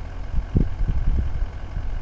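Vehicle engine idling with a steady low rumble, and a few soft low bumps in the first half.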